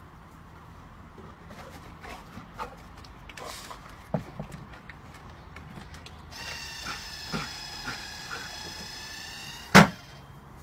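Automatic ball launcher's motor whining steadily for about three seconds after a ball is dropped into its bowl, then one loud, sharp launch near the end as it fires the ball out. Before that, light scattered clicks of a dog's claws on the wooden deck.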